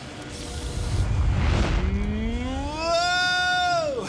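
A low rushing whoosh about a second in, then a man's long rising cry of alarm that glides up, holds high and drops off at the end as a swinging bowling ball comes at his face.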